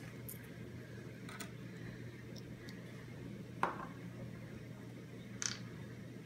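Small plastic food-colouring bottles handled and set down on a wooden table: a few faint ticks, then two sharper clicks about three and a half and five and a half seconds in, over a steady low room hum.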